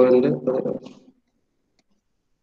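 A man's voice speaking for about the first second, then it cuts to dead silence.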